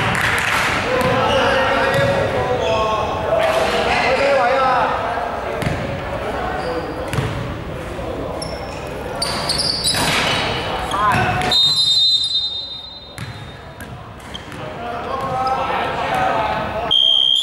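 A basketball bouncing on a wooden gym floor in short repeated impacts, among players' voices.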